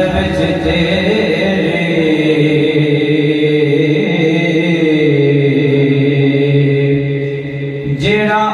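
A man's voice singing a naat into a microphone, drawing out one long phrase without pause: the pitch shifts a little in the first half, then settles on a single held note for the last few seconds.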